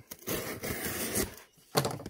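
Utility knife blade slicing through the packing tape on a cardboard shipping box, a scraping cut lasting about a second, followed by a couple of sharp clicks near the end as the box is handled.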